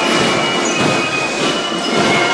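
Brass marching band playing during a street procession, mixed with outdoor street noise.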